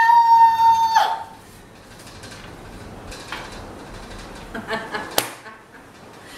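A woman's high-pitched shriek, held at one pitch for about a second as a plate of shaving cream is pushed into a man's face. Faint laughter follows, then a single sharp click about five seconds in.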